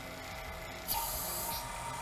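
A sudden short hiss of air through the vacuum chamber's ball valve as it is opened to start pumping the air out, about a second in, over a faint steady hum.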